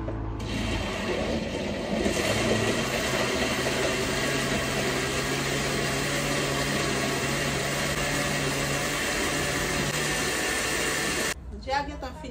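Countertop blender running steadily, blending a fruit drink. It gets louder about two seconds in and cuts off suddenly near the end.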